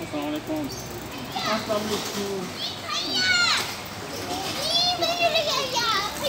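Children's voices calling and shouting while playing, high-pitched, with the loudest calls about halfway through and again near the end.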